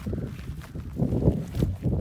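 Footsteps on dry, stony ground with rustling, irregular and low-pitched, from a person walking to follow the animal.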